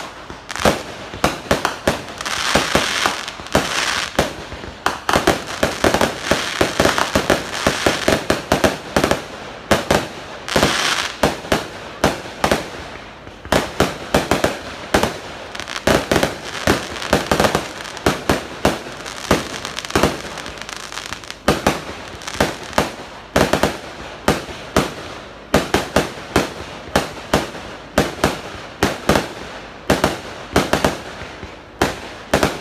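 Fireworks display: a rapid, continuous string of sharp bangs and crackles from aerial shells bursting overhead, several reports a second, with stretches of dense crackling.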